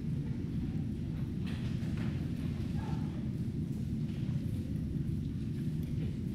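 Steady low rumble of a large drum fan running, with a few faint footsteps knocking on the gym floor about a second and a half and two seconds in.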